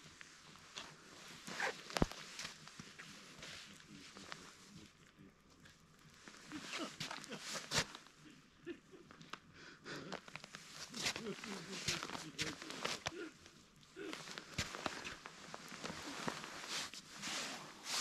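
Boots stepping and scuffing on snow-dusted ice, with scattered sharp knocks and clicks.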